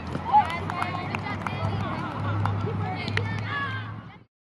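Teenage girls calling out and laughing during a running drill on a soccer field, with scattered sharp knocks among the voices.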